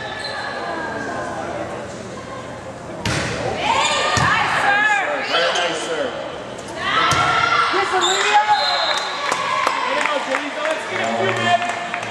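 A volleyball striking hands and the gym floor, several sharp knocks that echo in the hall, among the voices and calls of people in the gym.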